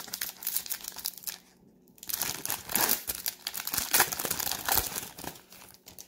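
Foil trading-card pack wrapper crinkling as the pack is opened and handled, in two bouts with a short lull a little over a second in.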